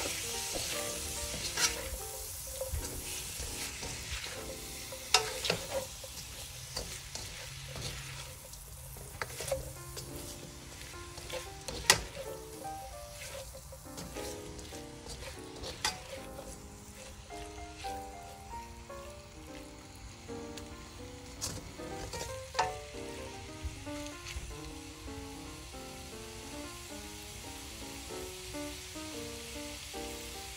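Shrimp, meat and scrambled egg sizzling on a medium heat in a stainless steel pan while being stir-fried with a slotted spatula, with sharp clicks of the spatula against the pan every few seconds.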